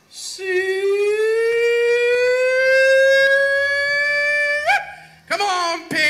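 A man's hog call at a calling contest, into a microphone: one long held note that climbs slowly for about four seconds, then breaks sharply upward, followed by a few short higher calls near the end.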